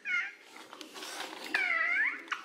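Toddler girl crying out in pain as hair tangled in a wheeled toy snake is pulled: a short high wail at the start, then a longer one that dips and rises again near the end.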